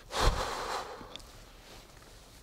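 A man's heavy exhale blown close to the microphone, one noisy breath lasting under a second with a low rumble of breath on the mic, as he tries to calm down.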